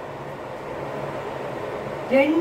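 A steady low hum over a faint even hiss: constant background room noise with no other event.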